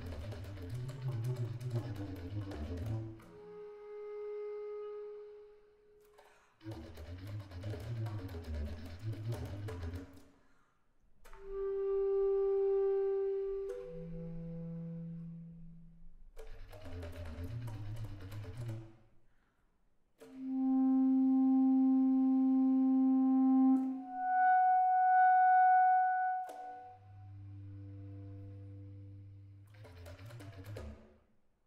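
Solo bass clarinet playing contemporary music: busy, rough passages in the low register alternate with long held notes at changing pitches. The loudest is a low sustained note about two-thirds of the way through, followed by a higher held note.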